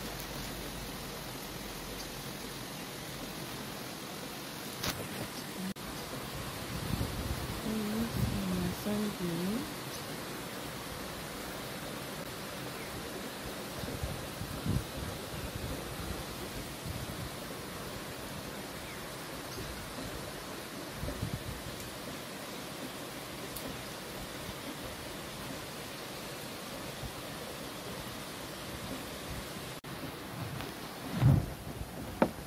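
Steady rain falling, an even hiss that runs on unchanged, with a click about five seconds in and a brief wavering low-pitched sound a few seconds later.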